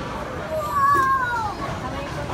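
A person's high-pitched, drawn-out vocal squeal, about a second long, falling in pitch at the end, over the bowling alley's background noise.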